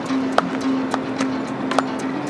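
A small band playing live: a held low melodic line with sharp, regular percussive clicks from the drum, about two a second.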